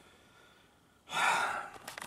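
A man's sigh: one breathy exhale about a second in, lasting about half a second, out of frustration at a power window that won't work.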